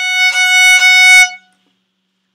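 Violin playing one sustained high note over several bow strokes, growing steadily louder in a crescendo to forte as the bow travels toward the bridge; it stops about one and a half seconds in.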